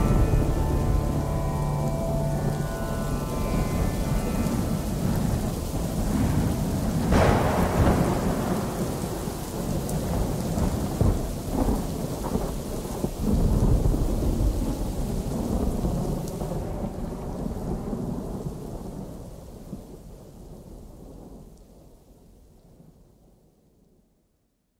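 Recorded rain and thunder at the tail of a song: the last musical notes die away in the first few seconds, leaving steady rain with a sharp thunderclap about seven seconds in and further rumbles, fading out by the end.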